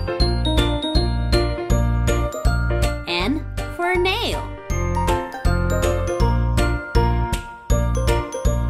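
Cheerful children's background music: a steady pulsing bass beat under a jingly, bell-like melody. About three seconds in, a voice briefly says a word or two over it.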